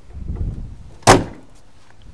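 The door of a 1973 Mercury Marquis Brougham is swung shut after a low rumble and slams once, loudly, about a second in.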